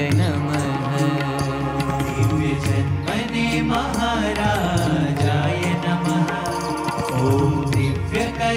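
Devotional Hindu kirtan music in Swaminarayan style: a melody carried over a steady bass and a regular percussion beat.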